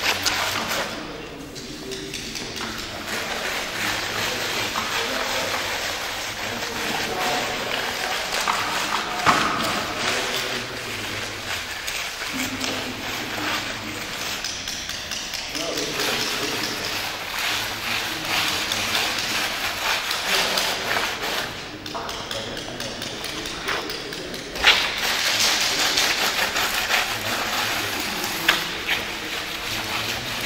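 Indistinct voices talking in a large, echoing hall, over a dry scratching of a block of blue chalk rubbed across a concrete floor. Now and then there is a knock, the sharpest one near the end.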